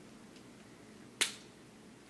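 A single sharp crack of a cooked crab leg's shell being bent by hand, about a second in.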